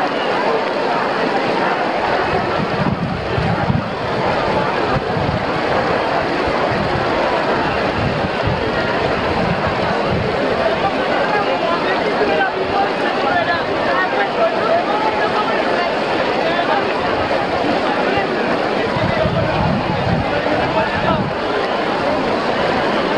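Large crowd chattering, many voices at once with no single one standing out, over the steady splash of fountain jets. Wind rumbles on the microphone now and then.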